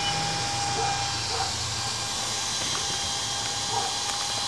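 Small electric fan running steadily in the outlet duct of a homemade downspout solar air heater, blowing warm air: an even airy hiss with a thin steady whine.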